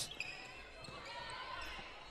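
Faint live basketball court sound: the ball bouncing and sneakers squeaking on the hardwood floor, with a large hall's reverberation.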